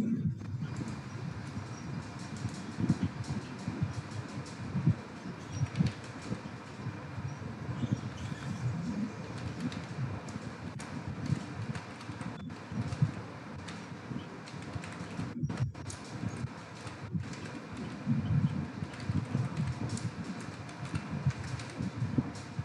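Computer keyboard typing: irregular key clicks over a low, uneven background rumble.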